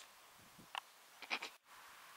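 A few faint, short crinkles of a crisp packet being handled, with a moment of dead silence a little past halfway.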